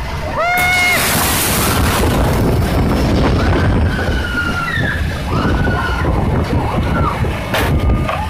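Storm wind and heavy rain battering a glass storefront, a dense steady rush of noise. A high, rising scream comes about half a second in, and more screams rise and fall through the middle.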